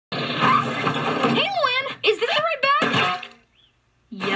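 Cartoon character voices: a loud, noisy stretch in the first second and a half, then quick speech with strongly swooping pitch, falling quiet near the end.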